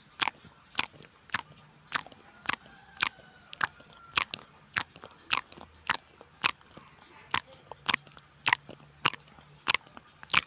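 Close-miked chewing of chicken in red chili sambal, heard as wet mouth clicks and smacks in a steady rhythm of about two a second.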